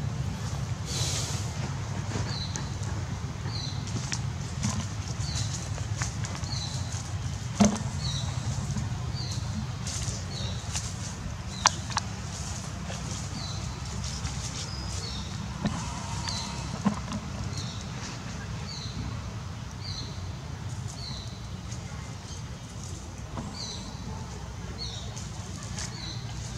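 A short, high chirping call repeated at a very even pace, about every second and a quarter, over a steady low rumble, with a few sharp clicks near the middle.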